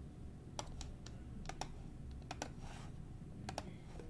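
Faint, irregular key clicks of a computer keyboard being typed on, a dozen or so taps, some in quick pairs.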